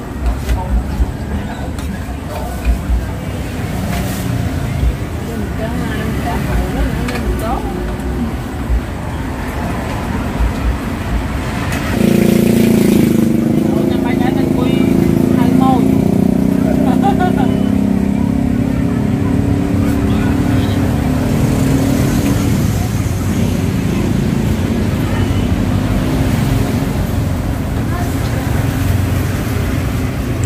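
A motor vehicle's engine running close by, coming in suddenly a little before halfway and easing off about ten seconds later, under people talking.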